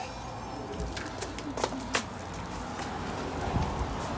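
A bird cooing low, with a few sharp clicks in the middle.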